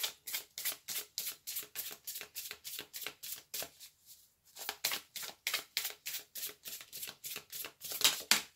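A deck of tarot cards being shuffled by hand: a quick, even run of card slaps, about five a second, with a short pause about halfway through.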